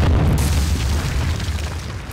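A stock sound effect of a stone wall blasting apart: a sudden boom, a burst of crashing rubble about half a second in, and a deep rumble that dies away near the end.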